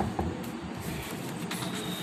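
Paper and phone handling noise: a steady rustling hiss with a few light clicks near the start as the textbook and sheet are shifted.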